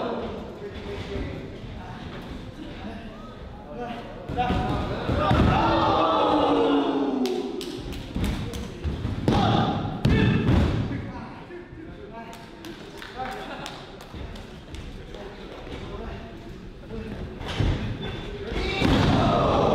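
Thuds and slaps on a wrestling ring's canvas mat as the wrestlers grapple and hit the mat, mixed with shouting voices from the ringside crowd.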